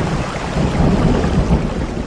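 Loud, steady rushing noise with a deep rumble underneath, swelling up from silence.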